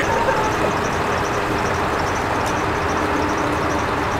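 Nissan 240SX's engine idling steadily, heard at the exhaust as an even low rumble.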